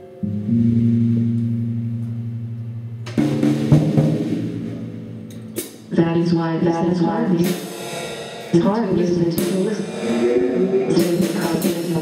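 Live band music: a single held low note rings and slowly fades, then about three seconds in the drum kit, electric guitar and keyboard come in together, with snare hits and repeated cymbal crashes.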